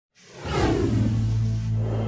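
A whoosh sound effect that sweeps downward in pitch and settles into a low, steady musical drone. This is the opening sting of a channel logo animation.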